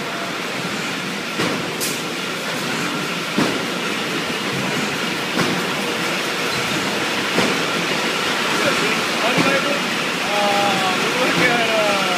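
Beer bottling line running: a loud, steady din of machinery and glass bottles jostling on the conveyors, with a regular knock about every two seconds.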